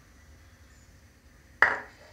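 Quiet room tone, then, about one and a half seconds in, a single short clink as a small glass sauceboat holding ground coffee is set down on the counter.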